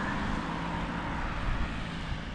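Steady road traffic noise with a low engine hum underneath.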